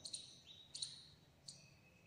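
Marker pen squeaking on a whiteboard during writing: a few faint, short, high squeaks about two-thirds of a second apart.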